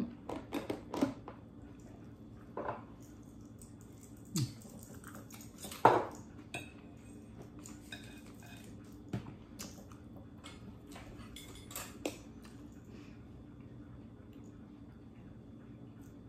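A steel knife and fork clinking and scraping on a plate as food is cut, in scattered sharp clicks that are loudest about six seconds in. Between the clicks there is only a faint steady hum.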